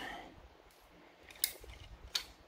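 Quiet handling of a plastic model car body, with one short, sharp click about one and a half seconds in as the magnet-held styrene front end is pulled off.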